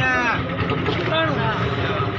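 Men's voices in a crowd calling out and talking over one another during cotton auction bidding, over a steady low background rumble.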